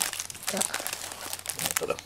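Clear plastic bag around a plush toy crinkling as it is handled, a rapid run of sharp crackles.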